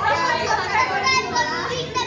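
Several voices, women and a child, speaking and calling out together at once.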